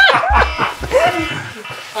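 Men laughing in short bursts over background music with a low pulsing beat; the beat stops under a second in.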